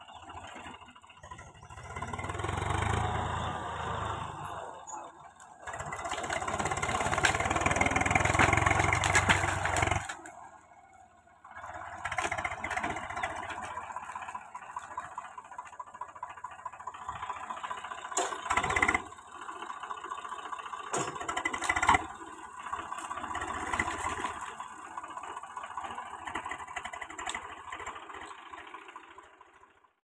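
Swaraj 744 tractor's three-cylinder diesel engine working under load while pulling a two-bottom mouldboard plough. It swells loudly twice in the first ten seconds, drops briefly, then runs on more steadily with a few sharp clanks from the plough and hitch.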